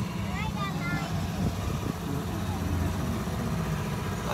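Tour shuttle running along with a steady low rumble of engine and road noise.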